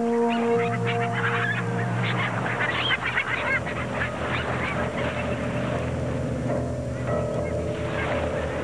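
A seabird colony calling: many short, overlapping squawks from a flock, over soft background music.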